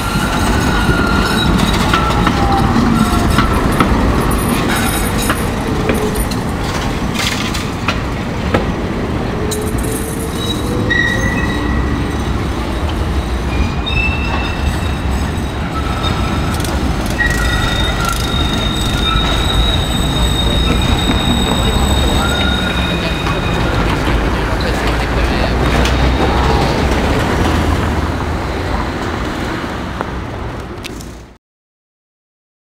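Green Milan ATM Sirio tram (7000 series) running along the rails past a platform, with a steady low rumble. Its wheels squeal in short high-pitched tones on and off throughout.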